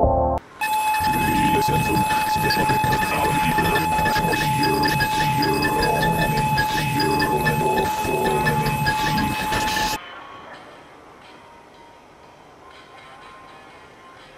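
Electronic sampler playing a sampled loop: a steady high tone over a dense, noisy texture, starting just after a brief drop-out of the previous organ-like chords. It cuts off suddenly about ten seconds in, leaving only faint hiss.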